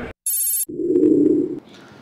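A short electronic ringing sound: a bright high chirp, then a lower buzzing tone for just under a second that cuts off suddenly.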